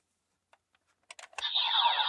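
Kamen Rider DX transformation belt toy: a few light plastic clicks as a trading card is passed over it, then about a second and a half in its speaker starts a loud electronic sound effect with falling sweeps as the belt lights up, the card having been read.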